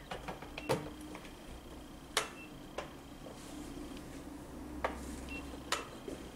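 Five sharp knocks and clicks at irregular intervals over a faint steady hum, the loudest about two seconds in.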